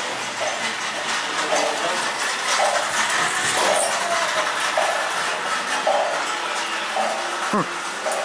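Indoor big-box store ambience: a steady wash of background noise with indistinct distant voices.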